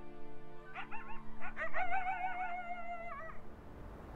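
A canine gives a few short yips, then one long wavering howl that breaks off about three seconds in, over background music of sustained chords.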